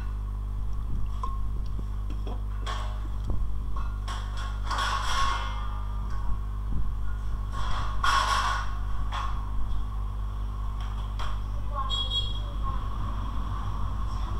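Steady low electrical hum with a faint high tone, broken by a few light clicks and two short breathy noises about five and eight seconds in.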